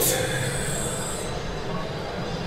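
A steady low hum, with a high hiss during the first second or so.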